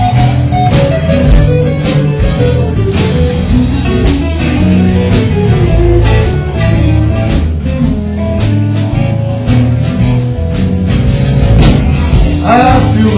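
Live blues band playing an instrumental break: electric guitar over bass and a steady drum beat.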